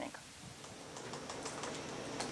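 Quiet room tone in a lecture hall, with a few faint light clicks.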